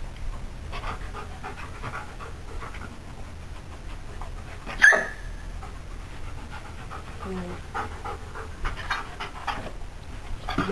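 Belgian Shepherd dog panting in quick breaths, with a single sharp click of a training clicker about halfway through.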